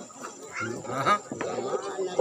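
A person's voice making drawn-out vocal sounds that are not clear words, with bending pitch and one rising glide about halfway through.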